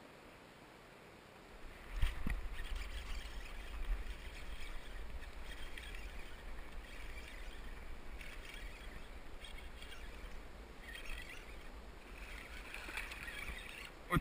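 Water sloshing and splashing around a kayak as a hooked bass is brought in through thick weeds, over a steady low rumble on the camera microphone. It starts suddenly with a knock about two seconds in, after near silence.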